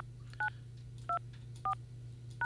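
Telephone keypad (DTMF) tones as digits are keyed in: four short two-tone beeps, roughly half a second apart.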